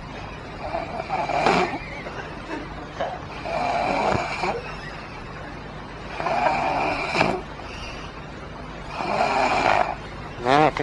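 A man snoring loudly: four long snores in a slow breathing rhythm, about two and a half seconds apart, over steady cassette tape hiss and hum.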